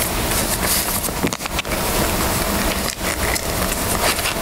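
Paper cards rustling and crinkling as they are handled close to a microphone, with a few sharper crackles.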